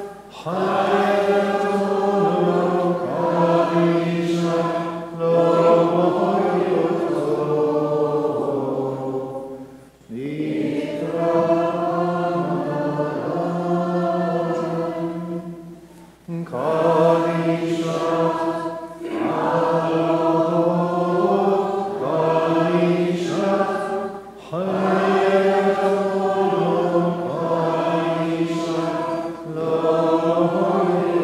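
Maronite liturgical chant: voices singing a slow melody in long, held phrases, with short breaths between phrases every five to eight seconds.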